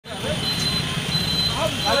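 Busy road traffic noise, a steady low rumble of engines, with a faint high whine that comes and goes and voices of a crowd joining near the end.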